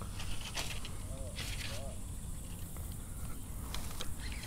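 Faint handling noises from a fishing rod and baitcasting reel, a few soft clicks and rustles, over a low steady outdoor rumble.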